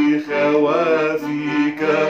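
A man singing a slow Arabic hymn melody with long held notes, accompanied by his own piano accordion playing sustained chords.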